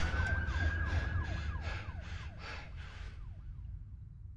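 A siren sounding, a long held wail with a quick falling warble repeating about three times a second, fading away by about three seconds in over a low steady rumble.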